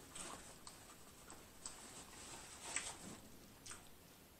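Faint close-up mouth sounds of someone chewing food: a handful of soft, irregular clicks and smacks.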